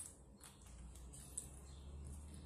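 Nearly silent handling of a Seaknight Slardar baitcasting reel: one faint light tick about one and a half seconds in, over a low steady hum.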